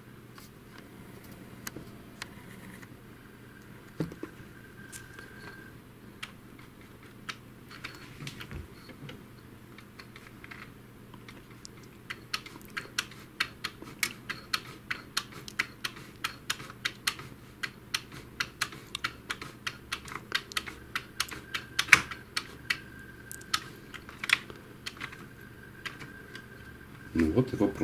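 Plastic clicking from the paper-feed mechanism of an Epson TX650 printer as its pickup roller and gear train are turned to test the paper pickup and separator. A few scattered clicks at first, then a quick run of clicks, three or four a second, from about halfway.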